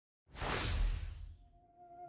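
A whoosh sound effect for an animated logo reveal, lasting about a second and fading away. Near the end a faint steady tone begins.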